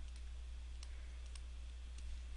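A few faint clicks of a stylus tip tapping and writing on a tablet surface, over a steady low electrical hum.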